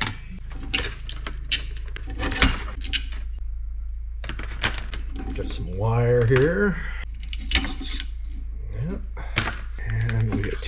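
Scattered light metallic clicks and clinks from small metal parts and wires being handled and pulled off an RV power jack's motor assembly, over a steady low hum.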